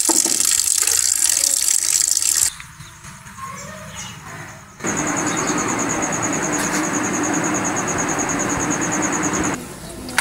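Water running from a tap and splashing onto a steel plate for the first couple of seconds. After a quieter stretch, a loud steady hiss with a fast, even, high chirping over it runs for about five seconds.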